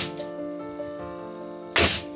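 A cordless brad nailer firing into a plywood frame: a short, sharp shot near the end, over background music.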